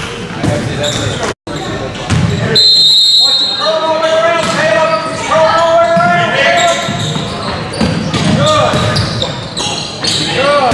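Basketball bouncing on a hardwood gym floor during a game, with voices shouting and echoing in the gym. The sound cuts out completely for an instant early on.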